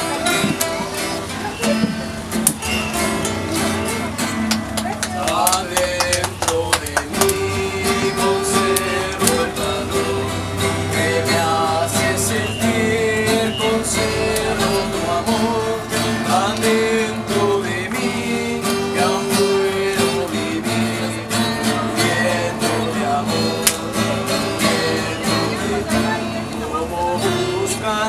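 A small group of acoustic guitars, a student ensemble of three, strumming and picking a tune together in a steady rhythm, with people's voices behind them.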